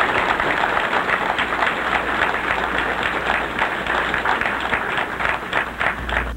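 An audience applauding in welcome: a steady, dense round of many hands clapping.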